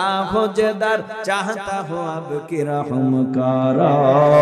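A male preacher chanting into microphones in a melodic, sung voice, holding long notes that bend up and down in pitch.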